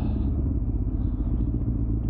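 Suzuki GSX-R 600 K9 sportbike's inline-four engine running at a steady pitch under wind and road noise, heard from the rider's position.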